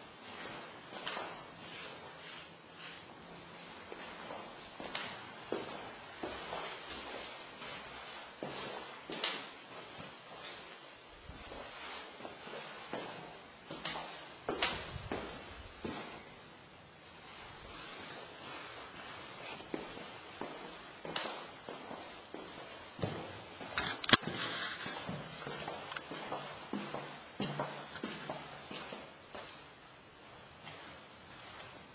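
Faint, irregular knocks, taps and rustles in a quiet room, scattered through the stretch, with one sharp click about two-thirds of the way through standing out as the loudest.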